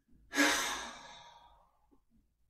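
A person's long audible sigh: one breathy exhale with a brief voiced start, fading out over about a second.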